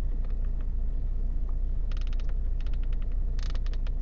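Rapid runs of small clicks from scrolling the Volvo V40's infotainment letter wheel with the centre-console control knob, one click per letter step. There are a few clicks near the start, a quicker run about two seconds in and another near the end.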